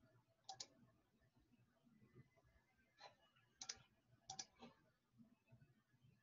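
Faint computer mouse clicks: a handful of short clicks, several in quick pairs, from about half a second to five seconds in, over near-silent room tone.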